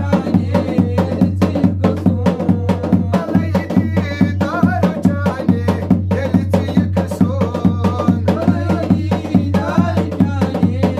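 Folk song: a two-headed barrel drum beaten in a fast, steady rhythm, with a voice singing a wavering melody over it.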